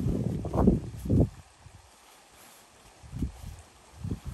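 Rustling of a Gore-Tex bivy bag's fabric as it is twisted shut around a stuffed sleeping bag and sleeping pad, loud for about the first second. Then it goes quiet, with one brief soft rustle about three seconds in.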